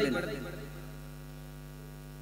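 Steady electrical mains hum from the microphone and public-address sound system, heard in a pause as the preacher's last word dies away with a short echo in the first half second.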